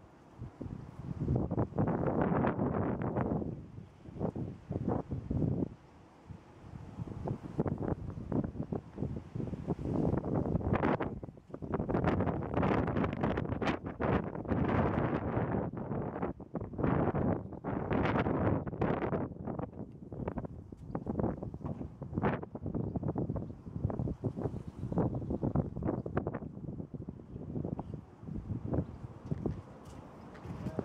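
Wind buffeting the microphone in gusts, a noisy rush that swells and drops every few seconds.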